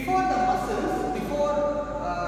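A man's voice talking continuously, a teacher explaining at the blackboard.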